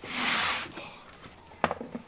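A brief rushing hiss that swells and fades within the first moment, then a sharp knock with a few light clicks about one and a half seconds in, as kitchen scales with a steel bowl are set down on a desk.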